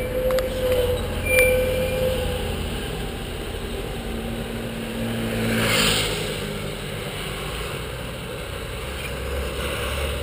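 Street traffic and road noise picked up by a camera on a moving bicycle: a steady low rumble, with a passing vehicle whose noise swells and fades about five to six seconds in.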